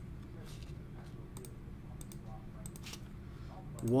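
A few scattered, sharp clicks of a computer mouse and keyboard over a low steady background hum.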